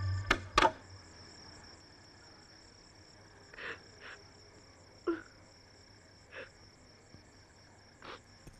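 Faint, steady chirring of crickets in the background, with a few soft, brief sounds in the middle. At the very start, music breaks off with two sharp clicks, the loudest sounds here.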